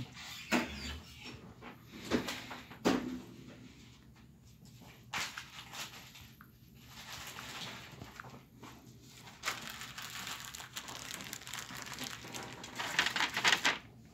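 Faint room noise with scattered short clicks and knocks, and a quick run of clicks near the end.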